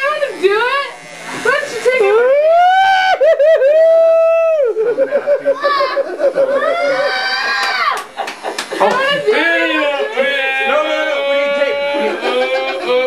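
Excited shouting and whooping from several voices, with long high-pitched yells held for a second or more.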